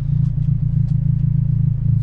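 Honda Civic Si's 2.0-litre four-cylinder engine idling with a steady low hum.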